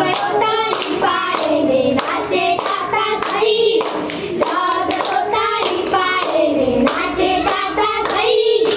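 Girls singing a children's song together, with hand claps falling on the beat through the singing.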